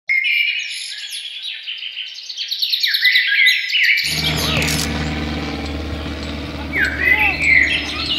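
Birds chirping in rapid, busy twittering. About four seconds in, a steady low outdoor hum starts under fewer, scattered chirps.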